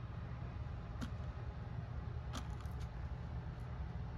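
A few faint, short taps and clicks of a wood-mounted rubber stamp being handled and pressed onto paper, over a steady low room hum.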